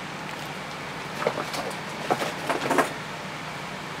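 Clear plastic packaging around a PWM charge controller crinkling in the hand: a scatter of light crackles through the middle, over a steady background hiss.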